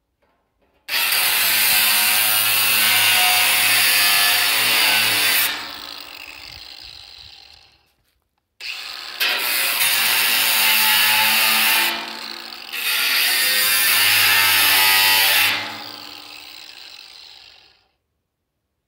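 Cordless angle grinder cutting into the steel lid of a drum in two long passes, each a high, dense grinding whine that fades away over a couple of seconds as the disc winds down after the cut. The second pass dips briefly midway before biting again.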